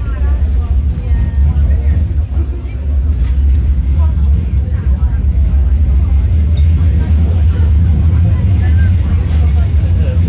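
Bombardier M5000 tram running, heard from inside the car as a steady low rumble, with passengers talking faintly in the background.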